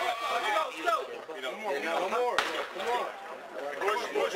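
Voices talking indistinctly in the background, with one sharp knock about two and a half seconds in.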